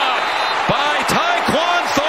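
Football TV broadcast audio: a man's voice, with about three short knocks in the middle.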